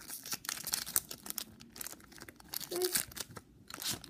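Shiny foil trading-card pack being torn open by hand: a run of crackling rips and crinkles of the wrapper.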